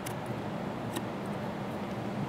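Two light clicks from the plastic lens module of a mini dome camera being turned by hand, one at the start and one about a second in, over a steady room hiss.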